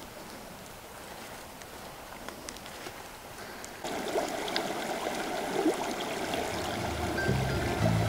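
Shallow creek water running and babbling over rocks, starting suddenly about four seconds in after a quieter stretch. Background music with low held notes comes in near the end.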